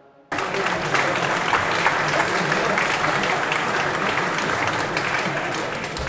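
Audience applauding. It cuts in suddenly a moment in and then holds steady as a dense clatter of many hands clapping.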